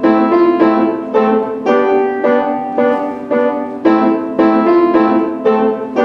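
Acoustic piano played solo: a steady, moderate-tempo passage with notes and chords struck about twice a second, each ringing and fading before the next.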